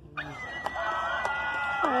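Animated Halloween doll prop playing its sound effect through a small built-in speaker: an eerie, voice-like sound of several held tones that starts suddenly and slides down in pitch near the end.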